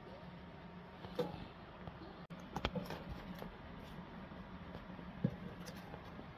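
Printed paper sheets and card being handled on a cutting mat: a few faint taps and rustles over a steady low hum.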